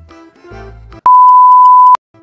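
A loud, steady electronic beep, one pure tone just under a second long, starts about a second in and cuts off sharply. Before it, soft background music plays.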